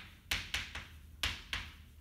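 Chalk writing on a blackboard: a few short, scratchy strokes and taps of the chalk against the board, each a fraction of a second long.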